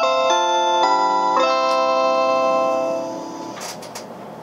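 JR Shikoku onboard announcement chime playing over the train's public-address speakers. It is a short melody of chiming notes whose last note is held and fades out about three seconds in, followed by a couple of faint clicks.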